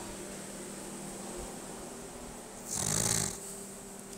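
A man's short, noisy breath about three seconds in, over a faint steady electrical hum.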